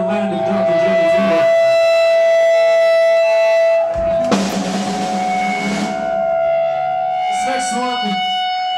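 Heavy metal band playing live with distorted electric guitars and drums. A long high note is held for about four seconds, then a cymbal crash comes in about four seconds in and the band plays on under another held note.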